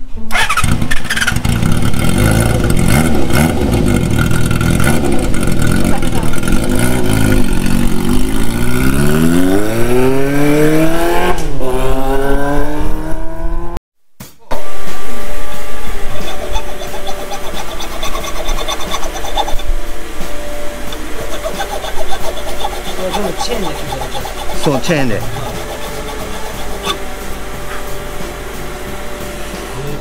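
Motorcycle engine running loud, then revving and pulling away with pitch rising; the pitch drops at a gear change and climbs again before the sound fades. After a sudden cut, a quieter steady hum follows, with a few light metallic clicks.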